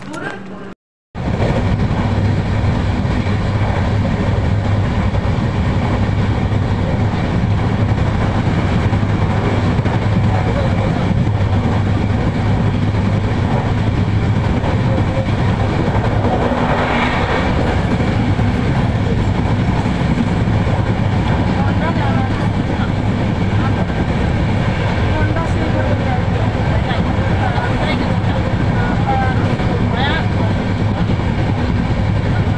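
A passenger train coach running at speed, heard from inside the carriage: a steady rumble of the wheels on the rails with a constant low hum. It starts suddenly after a brief silence about a second in.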